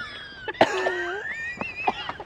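A person stifling a laugh: a short cough-like burst and a held-in hum, with thin high tones gliding over it.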